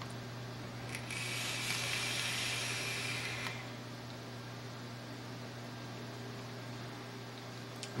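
Innokin Plex vape tank's mesh coil firing at 60 watts as a draw is pulled through it: a steady hiss starting about a second in and lasting about two and a half seconds. A steady low hum runs underneath.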